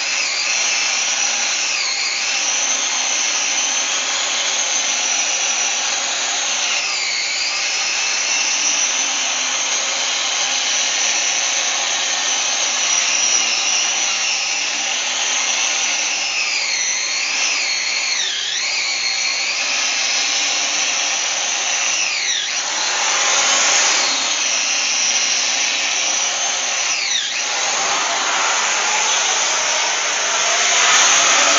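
Electric wire-wheel tool running continuously as it scours rust and corrosion off a seized piston top and cylinder bore in a cast-iron Mopar 400 block, its whine dipping and recovering several times as the wheel is pressed into the metal.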